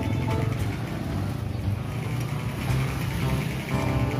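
A motorcycle engine running as it passes close by, over background music.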